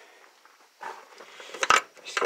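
Handling noise: rustling and a few light clicks, starting about a second in, with one sharp click just before the end.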